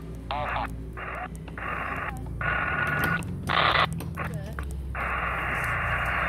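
Xiegu X6100 HF transceiver's receive audio as it is switched from band to band: bursts of band hiss with brief snatches of stations and a steady whistle midway, cut by short silent gaps at each band change. From about five seconds in, unbroken hiss.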